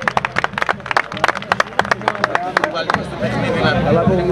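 Spectators clapping in quick, uneven claps for about three seconds, then men's voices shouting near the end.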